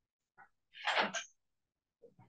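A single person's sneeze, with a faint intake just before it, then a short noisy burst a little under a second in that ends in a brief hiss.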